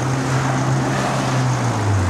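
Kia Rio's engine idling with a steady low hum that drops slightly in pitch near the end, over a rushing hiss.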